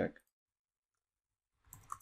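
A short cluster of computer keyboard keystrokes near the end, after near silence.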